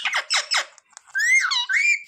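Rose-ringed parakeet calling: a few short raspy notes, then a high-pitched call in the second half that dips and rises again.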